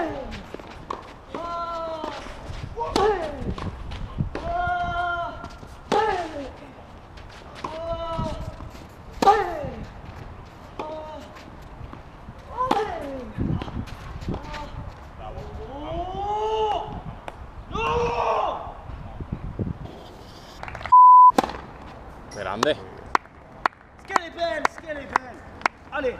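Tennis rally on a clay court: sharp pops of the ball struck by rackets, with voices calling out again and again. About three quarters of the way through comes a short, steady beep while all other sound drops out.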